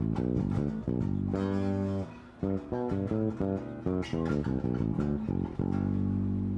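Electric bass guitar played fingerstyle: a melodic line of single plucked notes, with a held note about a second and a half in, a short break near two seconds, then a quicker run ending on another held note. It is a phrase in G major that brings out B as the major third.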